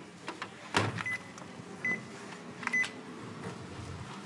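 A card-operated photocopier and its card reader: three short high beeps, a few sharp clicks (the strongest just under a second in) and a low machine hum.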